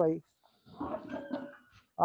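A brief animal call, about a second long, starting just over half a second in and quieter than the nearby speech.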